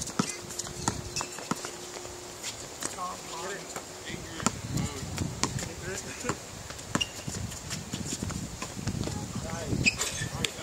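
A basketball bouncing on a hard outdoor court as it is dribbled, a string of sharp, irregular thuds, with players' footsteps and voices in the background.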